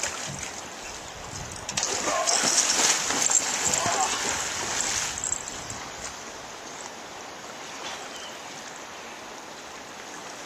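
Fast river current rushing steadily, with a louder stretch of splashing water from about two to five seconds in.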